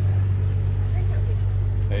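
Steady low engine hum, as of a vehicle idling close by, with faint voices in the background.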